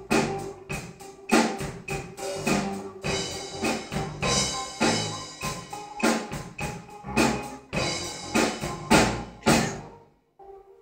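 Pearl acoustic drum kit played in a fast run of drum hits with crashing cymbals, the cymbals swelling about three seconds in and again near the end, then the playing stops abruptly.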